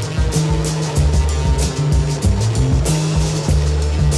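Blues-rock band recording: a drum kit keeping a steady beat over a deep bass line that moves between held notes.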